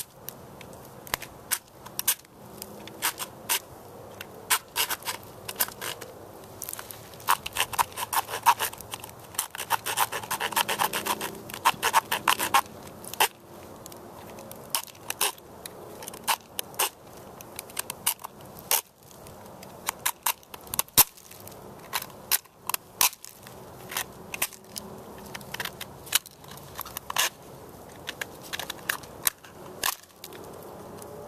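Knife blade scraping the inside of a turtle shell in quick, irregular strokes, with a dense run of scraping in the middle.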